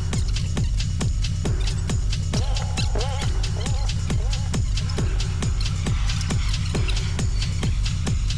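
Electronic background music with a steady, even beat and a wavering melodic line partway through.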